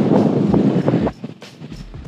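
Wind buffeting the camera microphone: a loud, rough rumble for about the first second, then dropping to a quieter hiss.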